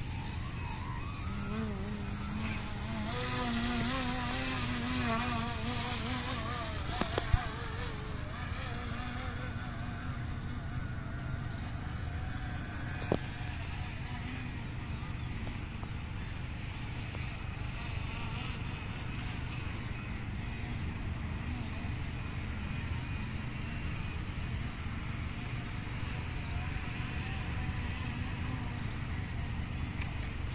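Radio-controlled model plane's motor and propeller buzzing, the pitch rising and falling with the throttle for the first several seconds, then settling into a steadier, fainter drone. Two sharp clicks, about seven and thirteen seconds in.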